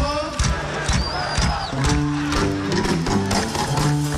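Live Gnawa-style music: the deep plucked bass notes of a guembri (three-string bass lute) come in strongly about two seconds in, over steady percussion strokes. A voice is heard near the start, and a brief high whistle glides about a second in.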